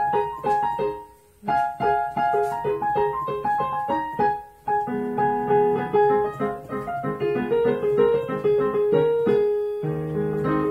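Piano played in a steady run of single struck notes, with two short breaks about a second in and just past four seconds, then fuller playing with low bass notes added from about five seconds.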